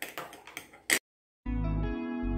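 A few faint handling sounds and one sharp click just before a second in, then a moment of dead silence. Background music with a pulsing low bass starts about halfway through.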